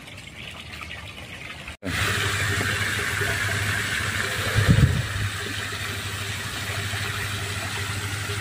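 Fish-feed pellets scattered by hand onto a pond, giving a steady hiss of pellets striking the water, over the steady hum of an engine. There is one louder low thump about five seconds in.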